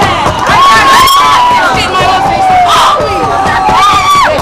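A group of hockey players yelling and cheering together in celebration after a championship win: loud, overlapping long held shouts that rise and fall in pitch.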